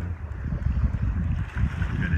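Wind buffeting a phone's microphone in a heavy, uneven low rumble aboard a sailing boat underway at sea, with the sea washing around the hull beneath it.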